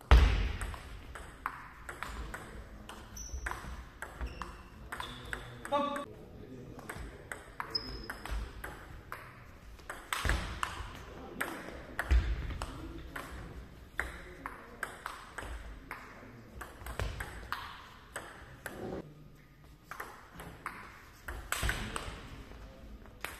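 Table tennis rallies: the plastic ball clicks off the bats, which are faced with medium-length pimpled and anti-spin rubber, and bounces on the table in quick back-and-forth runs, echoing in the hall. A few heavier thuds come near the start and about halfway through.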